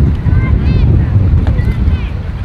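Wind buffeting the camera microphone: a loud, gusting low rumble. Faint distant shouts from the field and crowd come through above it.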